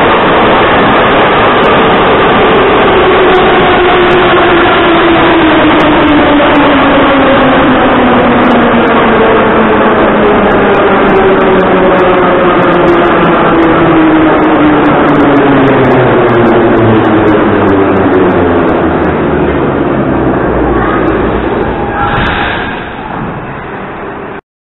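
Ezh3 metro train running through the tunnel and slowing into a station: a loud rumble of wheels on rail with a whine from the traction motors that falls steadily in pitch as the train slows. The noise eases off near the end as it comes to a stop.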